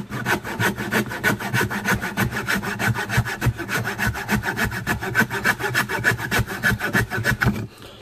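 Coping saw cutting through a wooden board in quick, even back-and-forth strokes, which stop shortly before the end.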